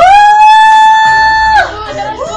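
A woman's long, high, steady cry held on one pitch for about a second and a half before breaking off: a mock labour wail while straining to push.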